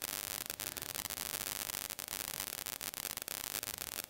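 Steady background hiss of the recording in a pause between spoken sentences, with faint scattered clicks.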